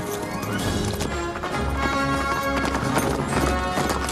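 Hoofbeats of several horses setting off at a gallop, mixed with film score music.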